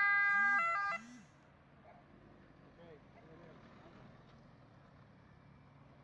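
A short electronic melody of steady tones changing pitch in steps, cut off about a second in; near silence follows.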